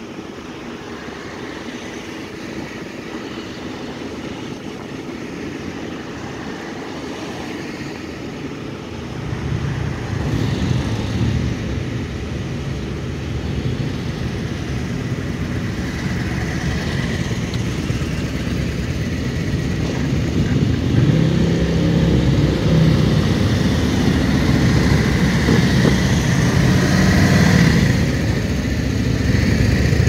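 A slow procession of vehicles passes close by. From about nine seconds in, police motorcycle engines running at low speed take over, growing louder toward the end.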